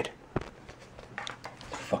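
Faint, steady hiss of rain falling outside, with a sharp click about a third of a second in and a few soft knocks and rustles around the middle.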